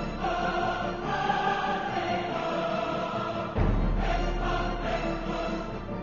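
Soundtrack music with a choir singing long held notes. A deep boom comes in about three and a half seconds in and carries on under the choir.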